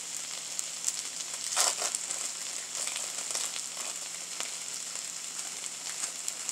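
Mayo-slathered bread and a slice of smoked turkey sizzling steadily on a griddle set to 325, with fine crackles throughout. A brief, louder crackly rustle comes about a second and a half in.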